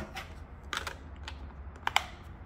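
Light plastic clicks and taps from handling an HP 48gII graphing calculator as it is turned over, ending in a sharper double click.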